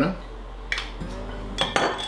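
Metal tongs clinking against a glass pickle jar: a single sharp click, then a quick cluster of clicks near the end with a short ring after.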